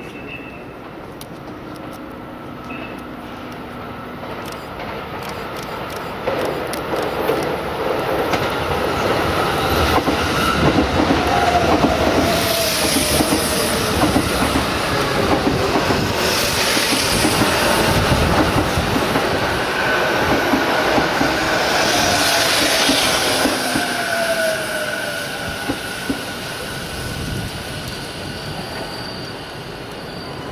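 JR East E233-2000 series electric commuter train entering the station and braking past: the rail noise builds over about ten seconds, peaks with a whine that falls in pitch and bursts of high squeal, then fades as the train draws away.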